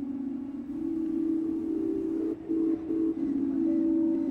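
Background music: a low sustained droning note, with a few short notes just above it about halfway through and a higher held note joining near the end.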